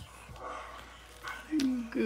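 A young child's voice: a drawn-out vocal sound with a slightly falling pitch begins about one and a half seconds in, after a quieter stretch.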